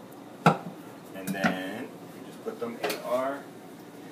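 Chef's knife slicing sweet plantains into rounds and knocking on a wooden cutting board: a sharp knock about half a second in and another near three seconds.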